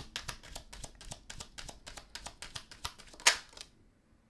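A Lenormand card deck being shuffled by hand: a rapid run of light card-on-card clicks, several a second, with one louder snap a little after three seconds in as the shuffling stops.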